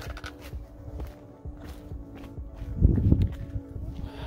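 Footsteps and scuffing on a rocky mountain trail, over background music holding steady notes. About three seconds in there is a louder low rumble.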